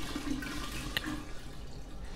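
190-proof grain alcohol pouring in a steady stream from an upturned bottle into a large glass jar, with a small click about a second in.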